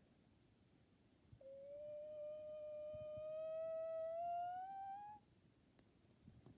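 A child humming one long held note for nearly four seconds, starting about a second and a half in, its pitch creeping slowly upward before it stops abruptly.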